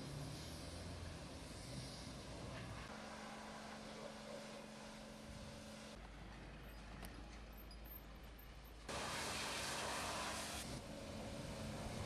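A pressure washer spraying a skip-loader truck's underside, with a steady mechanical hum under the spray. The hiss of the water jet gets much louder for about two seconds near the end.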